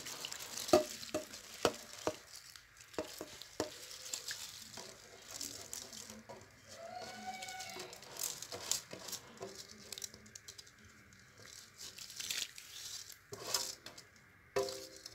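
Soaked rice being scraped by hand out of a steel bowl and tipped into a steel pot of boiled water: an irregular run of scrapes, clicks and light splashes, with the bowl clinking against the pot.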